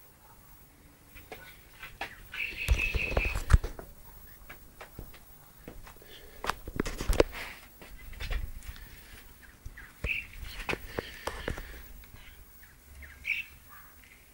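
Knocks, bumps and rustling from a handheld camera being carried and moved about, loudest twice in short busy stretches. A few short high chirps in quick series sound in the background, near the start, about two-thirds in and near the end.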